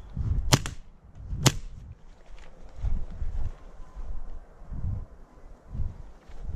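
Two sharp airsoft pistol shots about a second apart, with low thumps of movement and footsteps between and after them.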